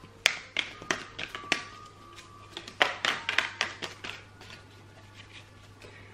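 A deck of oracle cards being shuffled by hand: irregular sharp taps and slaps of the cards, with a quick run of them about three seconds in.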